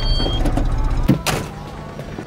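A car's engine running with a low rumble, then a car door shutting about a second in, after which the engine sound fades.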